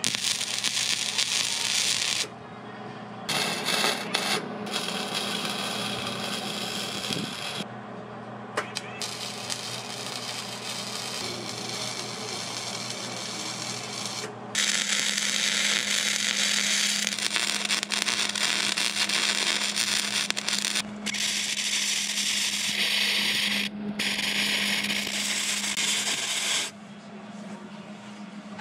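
Wire-feed welder laying beads on steel tubing: a crackling hiss that switches on and off abruptly in runs of one to six seconds with short breaks between them, over a steady low hum.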